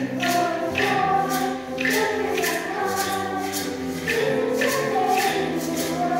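Children's choir singing together, sustaining notes that change every half second or so.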